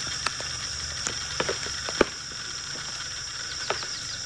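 Footsteps on dry fallen palm fronds and debris, with several sharp snaps and cracks, the sharpest about two seconds in, over a steady high-pitched whine in the background.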